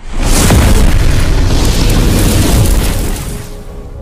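Cinematic explosion sound effect for an animated intro: a sudden, very loud boom that keeps rumbling for about three seconds, then fades out near the end.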